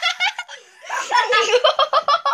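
Children laughing hard in high voices: a short laugh at the start, then a fast run of laughs about halfway through.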